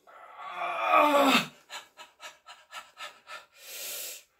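A man lifting weights groans with effort, loud and falling in pitch, as he holds a barbell curl. This is followed by quick panting, about four short breaths a second, and then a longer hissing exhale near the end as he lowers the bar.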